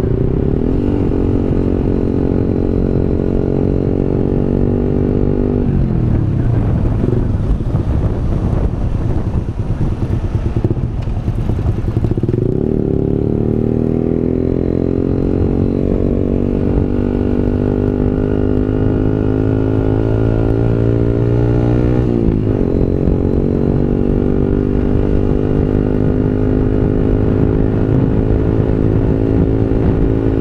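Motorcycle engine heard from the rider's onboard camera while riding, rising in pitch as it pulls. The pitch drops suddenly at up-shifts about six seconds in and about two-thirds of the way through. It runs lower and unevenly around a third of the way in, with wind noise on the microphone.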